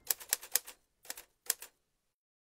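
Typing sound effect: sharp typewriter-style key clicks, four in quick succession, then two pairs of clicks after a short pause, stopping shortly before the end.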